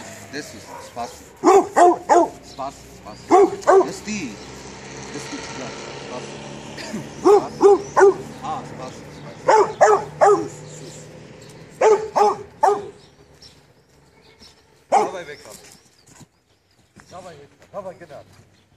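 Pit bull barking in quick runs of three or four barks, about five runs with pauses between, then a single bark near the end. It is barking at a stick held up out of its reach.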